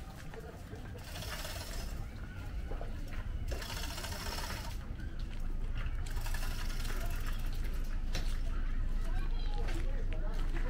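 Indistinct background voices over a steady low rumble, with several stretches of hissing noise.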